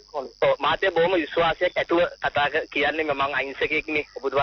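Speech only: a person talking continuously in radio talk-show audio, with brief pauses between phrases.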